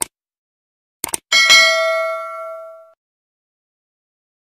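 Sound effects for an animated subscribe button: a short click, a quick double click about a second in, then a bright notification-bell ding that rings out and fades over about a second and a half.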